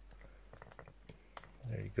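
Faint, scattered clicks and ticks of hands handling the electric skateboard's battery leads and plastic connectors, with a voice starting near the end.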